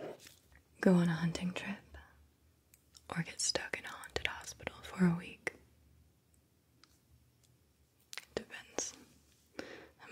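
A woman's soft-spoken, whispery voice close to the microphone, in two short phrases, followed by a few faint small clicks near the end.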